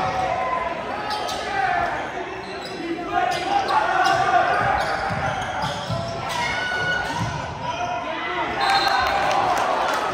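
Indoor basketball game sounds in an echoing gym: a crowd of voices talking and calling out, with the ball bouncing on the hardwood floor.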